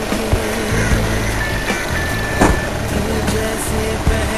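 Music with a few long held notes over a steady bass, mixed with street and traffic noise.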